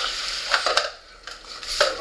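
Small camping and toiletry items being shoved aside on a table: rustling with a few light clicks and knocks, quieter around the middle.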